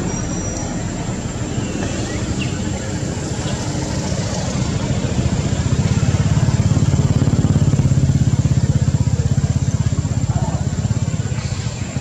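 An engine running steadily with a rapid low pulse, growing louder around the middle and easing off toward the end.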